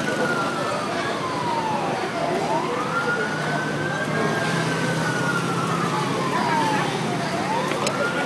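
Emergency vehicle siren wailing: the tone slides slowly down and then sweeps quickly back up, going through this cycle about twice.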